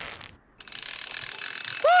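Cartoon sound effect of a rope running through a pulley as a climber in a harness is lowered down: a steady, even whirring hiss that starts about half a second in.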